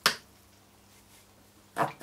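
Paintbrush scrubbed against the riveted bottom of a brush wash box: two short scraping sounds, one at the start and one near the end, which the painter calls a funny noise.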